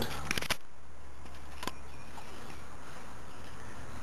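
A steady low hum with faint hiss above it, a few soft clicks in the first half second, and one more click a little before the middle.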